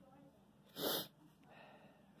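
One short, sharp breath noise from the person holding the phone, close to the microphone, about a second in.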